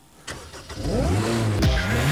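Ariel Atom's supercharged Honda Civic Type R four-cylinder engine starting up almost a second in and revving, its pitch climbing, dipping briefly and climbing again.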